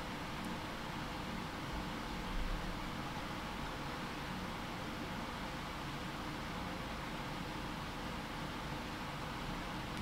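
Steady room tone: an even microphone hiss with a faint low hum, and a soft low thump about two and a half seconds in.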